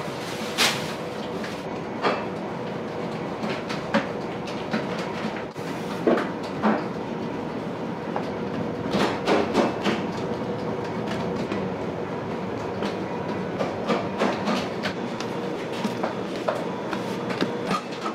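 Bakery workroom noise: a steady hum of running equipment with a faint tone in it, and scattered light knocks and clicks of utensils and trays on the bench, busiest about halfway through.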